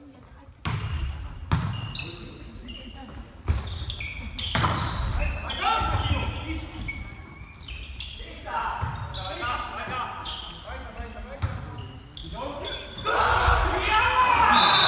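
A volleyball being hit back and forth in an echoing sports hall: a string of sharp smacks of hands and arms on the ball, the loudest about a second and a half and three and a half seconds in, with players calling out during the rally.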